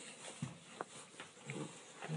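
French bulldog puppy chewing on a bone wrapped in a teething toy: a few soft gnawing clicks, about one every half second.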